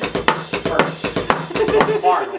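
Drum kit played in a steady driving pattern of kick, snare and cymbal hits, about four strokes a second, over a pitched backing part.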